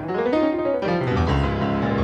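Solo piano playing a quick upward run of notes in the first second, then settling into full sustained chords.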